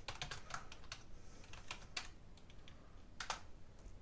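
Faint typing on a computer keyboard: quick, irregular key clicks, densest in the first second and thinning out after, with a sharper pair of clicks near the end.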